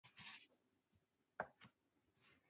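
Near silence with faint room tone: a brief soft rustle near the start and two soft clicks about a second and a half in.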